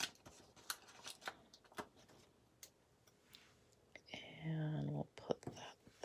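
Paper stickers and sticker sheets being handled, making scattered light clicks and crinkles. Just after four seconds in, a person's voice sounds briefly, for about a second.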